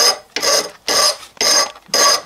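Steel hand file being pushed across a rusty steel axe head clamped in a vise, rasping in even strokes about two a second as it files down a lump, each stroke carrying a shrill ringing note from the metal.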